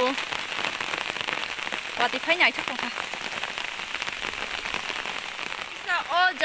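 Steady rain falling, an even dense patter of drops. A voice speaks briefly about two seconds in.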